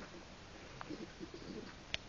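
A few soft, low, short cooing notes from an animal, about a second in, with a couple of sharp clicks, the loudest just before the end.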